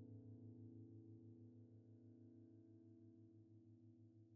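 Near silence: the faint tail of a held electric piano chord slowly dying away, with a slight pulsing in its low note.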